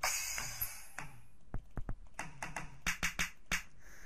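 Sampled drum-kit sounds triggered one at a time by mouse clicks in a computer drum app. A crash cymbal rings out at the start, followed by a string of separate drum and cymbal hits, some in quick succession.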